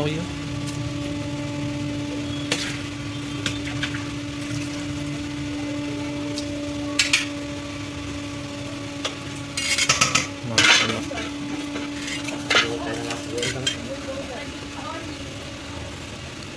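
A wire spider strainer and metal utensils scrape and clink against large steel cooking pots as rice is scooped and turned. The loudest clatter comes about ten seconds in. A steady low hum runs underneath.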